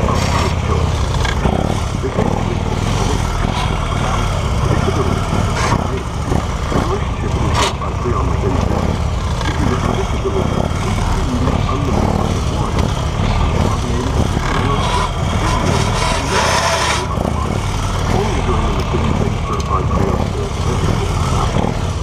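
Motorcycle engine running at low speed while weaving through a cone course, heard from a mount on the bike together with wind noise on the microphone.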